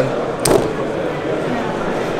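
A folding knife flicked open: one sharp click about half a second in as the blade snaps out and locks.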